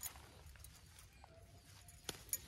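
Near silence with faint snaps and rustles of leafy greens being picked by hand from grass; one sharp click right at the start, then a few small ticks.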